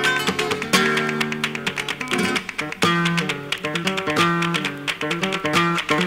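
Flamenco guitar music: an acoustic guitar playing plucked melodic phrases broken by sharp strummed chords.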